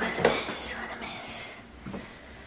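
Hands rummaging among clear plastic acrylic makeup organizers, with a click or two of plastic near the start, under soft whispering.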